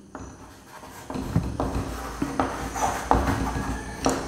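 Chalk writing on a chalkboard: a run of short scratching strokes and taps starting about a second in.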